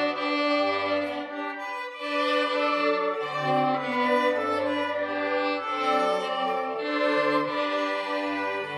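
Children's string ensemble of violins, violas and cellos playing a classical piece live, with sustained bowed notes over a moving bass line.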